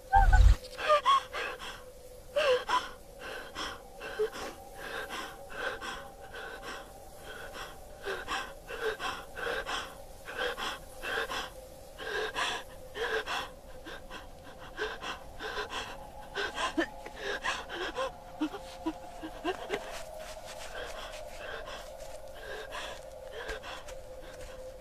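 A person gasping and panting in short, rapid breaths, about two a second, that thin out near the end, over a steady held tone. A low thump comes at the very start.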